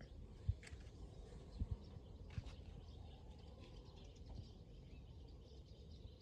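Quiet outdoor ambience with faint bird chirps and a few soft thumps in the first half, as of footsteps.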